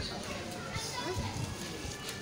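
Low background chatter of several voices, with no clear close-up speech.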